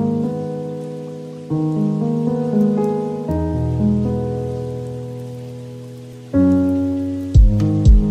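Lofi hip hop music: sustained keyboard chords, each struck and slowly fading, changing about every two seconds, over a steady layer of rain sound. A kick drum and sharp percussion hits come in near the end.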